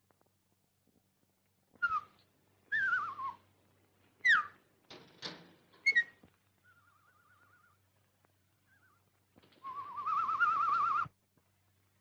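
Bird-like whistling: several short swooping whistles and chirps, a faint wavering trill, then a louder warbling trill near the end. It fits canaries in a cage, or someone whistling to them.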